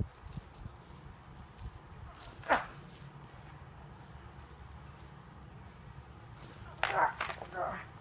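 A fighter's short shout, "ah", falling in pitch, about two and a half seconds in, then a quick run of short cries and sharp sounds near the end, over a faint low rumble.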